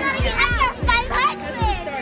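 Children shouting and cheering, their high voices overlapping, over music with a low repeating beat.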